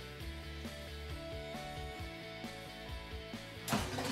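Soft instrumental background music with steady held notes. Near the end comes a short scraping noise as the air fryer's basket is pulled out.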